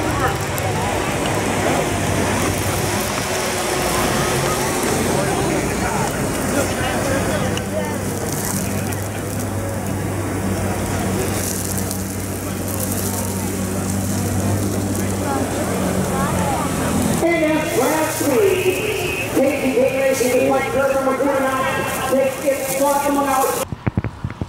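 Indistinct crowd chatter from many voices, with a steady low hum underneath through the middle. Clearer nearby voices come in in the last several seconds, then the sound cuts off abruptly just before the end.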